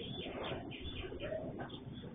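A dove cooing, a short steady note about midway, over a low background rumble, heard thinly through a security camera's microphone.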